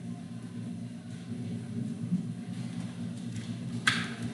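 Steady low hum of room background, with one brief sharp sound near the end.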